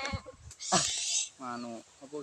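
A goat bleating, mixed with people's voices.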